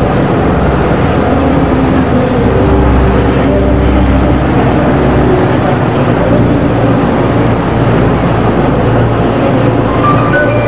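A column of eight-wheeled BTR-type armoured personnel carriers driving past with a steady low engine rumble.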